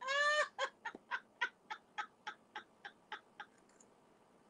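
A woman laughing hard: one loud high whoop, then a run of short "ha" bursts, three or four a second, that trail off and grow fainter.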